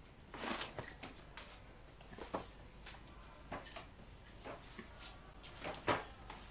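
Quiet room with a few faint, scattered clicks and soft rustles, a little louder near the end.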